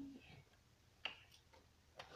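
A single sharp plastic click about a second in, with a fainter one just after, as the cap is twisted off a gallon milk jug; otherwise near silence.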